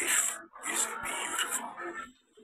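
Soundtrack of an AI-generated car advert playing back: breathy, whisper-like voice sounds in about four short bursts, full of hiss, with no clear words.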